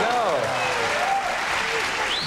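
Studio audience applauding, with voices rising and falling over the clapping.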